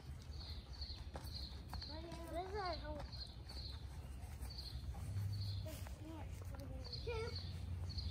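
Faint children's voices in the open air, with a soft, high chirp repeating about twice a second behind them.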